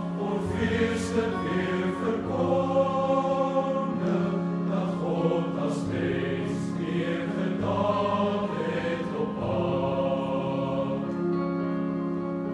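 Boys' choir singing a Christmas carol in long held chords, with sharp 's' sounds of the words cutting through here and there.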